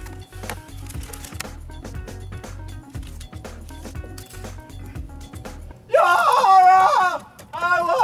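Wind buffeting the microphone, with light knocks, then from about six seconds a loud voice in long, drawn-out, wavering notes, twice.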